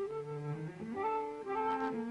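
Flute and cello playing a classical chamber duet. The cello plays a low note, then moves higher; under it the flute holds notes, with both parts changing pitch every half second or so.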